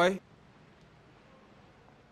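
A man's voice ends a spoken word in the first instant, followed by near silence: faint room tone.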